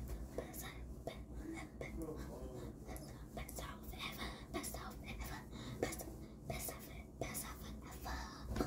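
A girl's faint whispering, with soft rustles and light clicks scattered through it.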